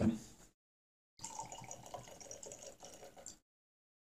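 Spirit poured from a glass bottle into a tasting glass: a faint pour lasting about two seconds, starting about a second in.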